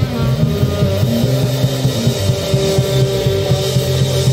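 Live jazz band playing: saxophone over a prominent electric bass line, with keyboard and drums.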